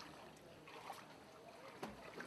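Faint background sound with distant voices and a single sharp knock near the end.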